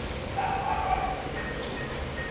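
A dog's single short call at a steady pitch, about half a second in.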